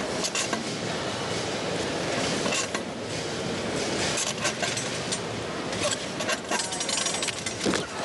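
Arena crowd noise with repeated clanks and knocks from the steel high bar and its cables as a gymnast swings through his routine.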